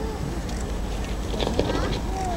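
Outdoor crowd ambience: spectators' voices murmuring faintly in the background over a steady low rumble.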